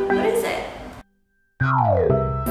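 Background music with mallet-like tones that cuts off suddenly about a second in. After about half a second of near silence, a cartoon sound effect glides downward in pitch and the music starts again.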